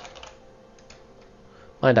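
Computer keyboard typing: a handful of quiet key clicks, then a man's voice begins near the end.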